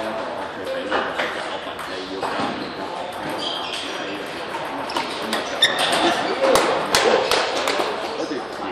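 Table-tennis balls clicking off bats and tables in quick rallies, the clicks thickest from about five to seven and a half seconds in, over background voices echoing in a large hall.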